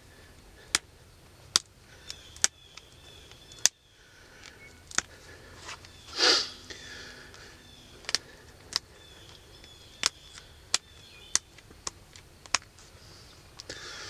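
Stone arrowhead being pressure-flaked on a leather pad: sharp clicks at irregular intervals, roughly one a second, as small flakes snap off its edges, with a short hiss about six seconds in.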